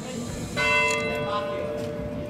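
A procession throne's bell struck once about half a second in, ringing on with a long, steady tone over crowd chatter. This is the kind of stroke used to give the porters their command.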